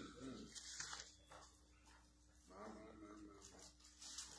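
Near silence: church room tone, with a faint, short voice sound about two and a half seconds in.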